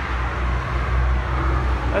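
Steady city street traffic noise with a low rumble.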